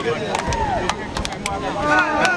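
Scattered sharp slaps of hands as football players shake and slap palms down a handshake line, over people's voices.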